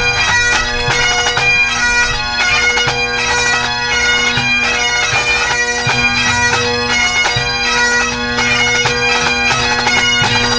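A full pipe band playing: Great Highland bagpipes sound a tune over their steady drones, while the drum corps of snare, tenor and bass drums beats time along with them.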